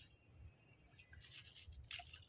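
Near silence: a faint, steady, high-pitched drone of crickets, with a few soft faint ticks.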